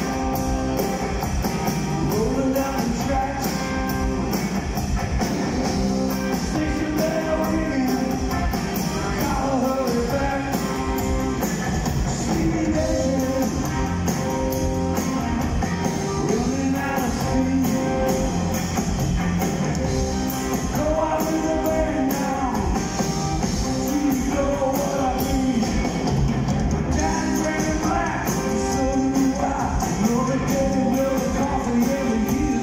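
Live rock band playing loud amplified music, with a male lead singer singing over electric guitars, bass and a drum kit, heard from the audience in a concert hall.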